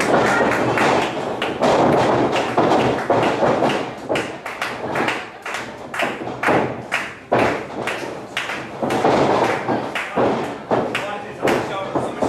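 Repeated irregular thuds and slaps of wrestlers moving on a wrestling ring's canvas, with voices calling out in a large hall.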